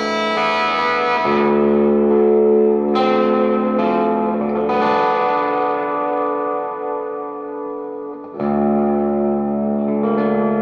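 Ibanez FR420 electric guitar played through a high-gain distorted amp: long, sustained notes and chords, each left ringing for a second or more before the next is struck, with a fresh, louder attack near the end.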